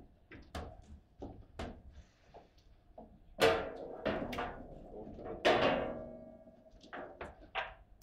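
Table football rods and handles being handled, giving a scatter of light clicks and knocks. Two louder knocks with a short ringing tail come about three and a half and five and a half seconds in.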